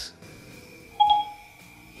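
A short electronic chime from Siri on a phone, one brief beep about a second in, as the assistant takes the spoken question.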